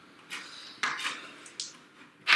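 Plastic game miniatures and pieces handled on a board-game table: a few light clicks and scrapes spread across the two seconds.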